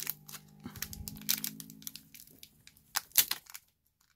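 Foil booster-pack wrapper crinkling and tearing as fingers pick open its crimped top edge, in a run of short crackles.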